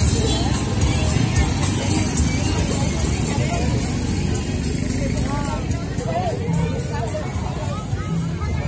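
Small decorated motorized passenger carts running slowly past, their engines a steady low rumble, mixed with music and people's voices.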